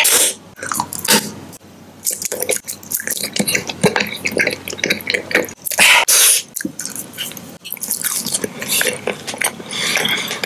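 Close-miked chewing and biting of candy and gummies, with many small wet mouth clicks throughout. Two louder bites come at the very start and about six seconds in.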